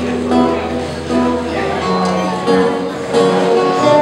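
Acoustic guitar played live, a slow tune of held notes changing every half second or so.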